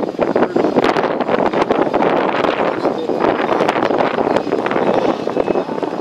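Wind buffeting the microphone: a loud, rough rushing peppered with short crackles throughout.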